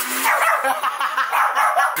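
A small dog whining and yipping without pause, its high cries wavering quickly in pitch.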